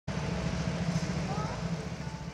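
Go-kart engines idling, a steady low pulsing hum while the karts sit stationary.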